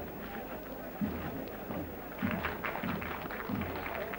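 A drum beating a slow, steady rhythm of deep thumps, about one a second, over a crowd's voices.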